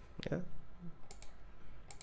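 Computer mouse clicking: two quick sharp clicks about a second in and another near the end.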